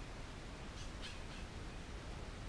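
A bird calling faintly outdoors, three short high calls in quick succession about a second in, over a steady low background hum.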